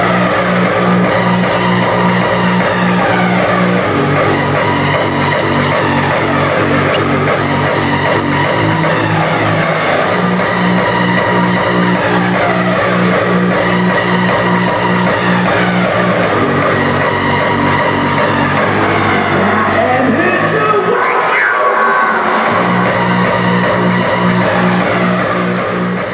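Hardstyle dance music with a pulsing bass line that changes note every few seconds; about twenty seconds in the bass drops out under a rising sweep, then comes back.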